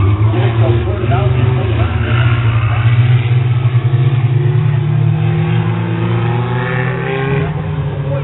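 Race car engines running steadily on the track, with people's voices talking over them.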